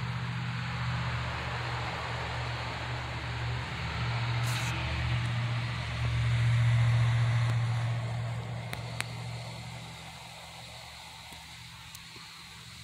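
A steady low hum with a hiss over it, growing louder a little past the middle and fading off in the last couple of seconds.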